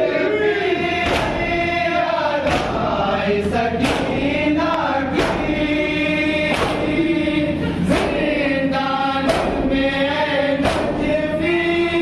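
A group of men chanting an Urdu noha (lament) together, led by a reciter. They beat their chests (matam) in unison, one sharp slap about every second and a half, in time with the chant.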